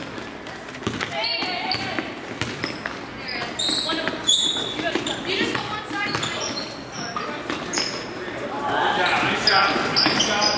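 A basketball being dribbled on a hardwood gym floor, with short high sneaker squeaks from players running, in a large echoing gym. Voices call out throughout and are loudest near the end.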